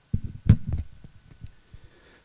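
A few low thumps and short soft knocks in the first second, then fading: handling noise as a magazine is held up and settled open.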